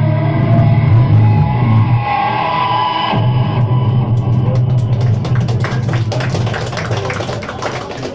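A post-punk band playing live on electric guitars and bass guitar. The sound is loud and dense until about three seconds in, then thins to held bass notes and slowly fades. Sharp clicks come in and grow thicker over the last few seconds.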